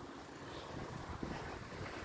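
Faint wind rushing on a phone's microphone outdoors, a low steady haze with no other distinct sound.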